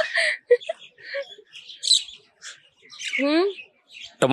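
Small birds chirping in short, scattered calls, with a brief vocal sound from a person about three seconds in.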